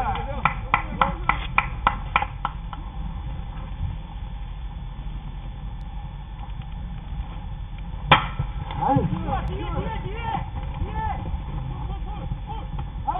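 A quick run of about ten sharp claps, about four a second, then scattered distant shouts from the field. About eight seconds in comes a single sharp crack of the bat meeting the ball, putting it in play for a fly ball.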